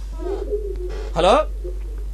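A soft, low cooing call, bird-like, through the first second, with another faint one near the end; just over a second in, a man says 'hello', the loudest sound.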